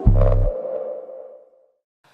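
A TV show's musical ident stinger: a last heavy bass hit, then a ringing tone that fades away over about a second.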